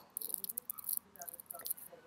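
Faint, scattered high-pitched ticks and hiss in a pause between speech, with moments of near silence between them.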